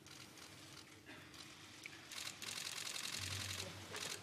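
A hushed chamber, then a little past halfway a rapid run of fine clicks lasting about a second and a half: camera shutters firing in burst.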